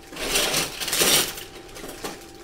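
Clear plastic bag crinkling as it is handled, in two spells over the first second and a half.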